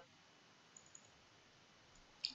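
Near silence: room tone with two faint computer mouse clicks just before a second in.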